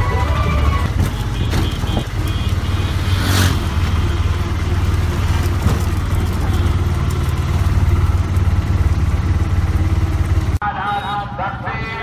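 Engine of a small open-sided vehicle running steadily with road noise while driving, with a brief hiss about three and a half seconds in. Near the end it cuts off abruptly and music with a male voice singing takes over.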